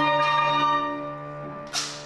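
Chamber ensemble music: a struck, bell-like chord rings and slowly fades over a held low note, and a second sharp strike comes near the end.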